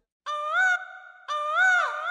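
Two held, pitched electronic-sounding tones, the second longer, each bending up and then dipping away at its end, after a sudden cut to silence.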